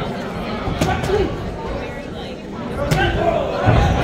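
Boxing crowd noise: scattered voices calling out over the arena hubbub, with two sharp smacks of punches landing, about a second in and near three seconds.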